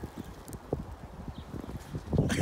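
Footsteps in snow: soft, irregular low thuds.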